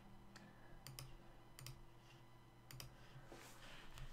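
Faint computer mouse clicks, about three quick pairs of ticks spread over the first three seconds, as on-screen checkboxes are clicked.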